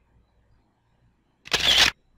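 Near silence, then about one and a half seconds in a single short camera-shutter sound effect from presentation software, marking a new picture appearing on the slide.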